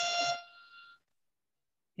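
A steady, buzzy tone with many evenly spaced overtones, fading out about a second in.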